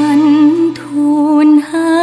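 A female vocalist sings a slow Thai ballad over soft backing accompaniment. She holds long notes with marked vibrato, broken by two short breaks between phrases.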